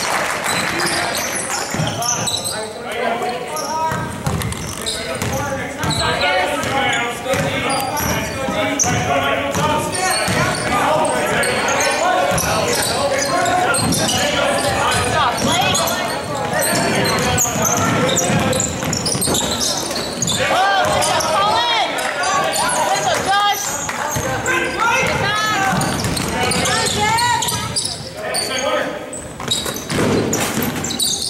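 Basketball dribbling and bouncing on a hardwood gym floor during live play, with players' and spectators' voices calling out, all echoing in the gym.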